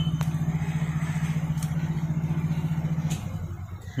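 A motor or engine running with a steady, fast-pulsing hum that cuts off about three seconds in. A few light clicks of metal tongs against the wire grill are heard over it.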